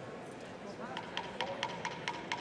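Murmur of many voices talking at once in a large legislative chamber. In the second half comes a rapid run of short clicks, about five a second.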